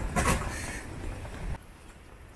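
Strong wind on the microphone: a low rumble with hiss, which drops away suddenly about a second and a half in.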